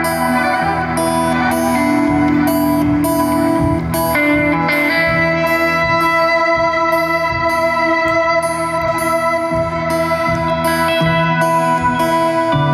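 Live band music led by electric guitar holding long, sustained droning notes over a steady rhythmic pulse. The harmony shifts about four seconds in.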